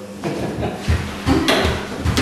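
A run of soft thuds and a sharper wooden knock from performers shifting on and around chairs on a studio floor, after a brief spoken "Did you".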